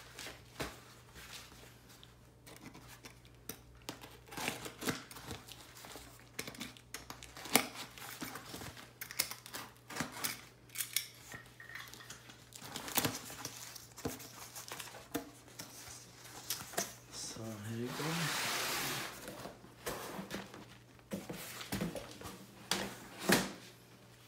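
A cardboard shipping box being handled and opened by hand: irregular rustling, tearing and tapping of cardboard and tape. About three-quarters of the way in comes a longer rushing scrape as the rolled vinyl chair mat slides out of the box, and a couple of sharp knocks follow near the end.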